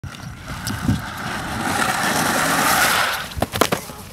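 Skateboard wheels rolling fast down a sandy dirt track, a rushing noise that grows louder as the board approaches and then fades, followed about three and a half seconds in by a quick cluster of thuds and scrapes as the rider and board crash onto the dirt.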